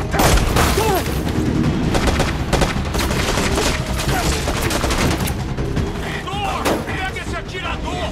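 Film action sound mix: rapid gunfire and crashing impacts with flying debris, over a tense music score, thinning out in the last few seconds.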